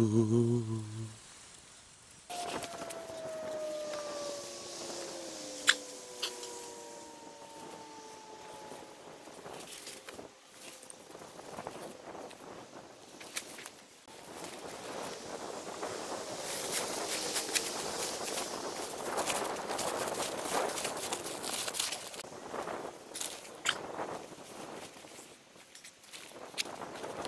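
Rustling and crunching in dry leaf litter as camping kit is handled and packed, busiest in the second half with scattered clicks and footsteps. Before that, a long, slowly falling drone is heard.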